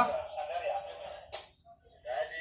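Mostly speech: the fading tail of a man's voice calling out, then a single short click about one and a half seconds in and a brief quiet.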